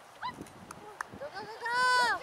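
A long, drawn-out shout from the soccer sideline near the end, rising then falling in pitch, with a sharp knock about a second in.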